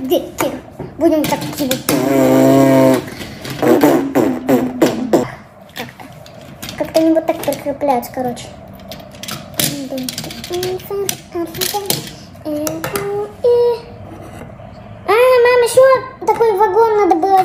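A child's wordless vocal sounds, with a held, sung note about two seconds in, over repeated clicks of plastic LEGO bricks being handled and pressed together.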